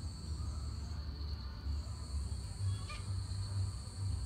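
Insects chirring steadily in two high-pitched tones, the higher one breaking off about a second in and resuming shortly after, over a low rumble.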